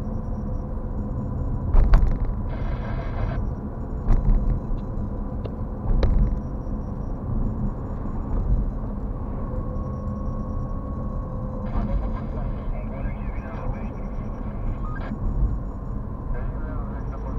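Car driving, heard from inside the cabin: a steady low rumble of road and engine noise, with a few sharp knocks about two, four and six seconds in.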